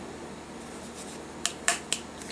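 Three short, sharp clicks close together in the second half, from a Mora knife's hard plastic sheath and belt clip being handled.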